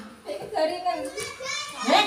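Children playing and talking, their voices high and lively, mixed with nearby chatter.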